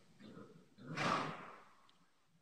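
A horse snorting: one loud, breathy blow about a second in that fades over half a second, after softer rhythmic puffs.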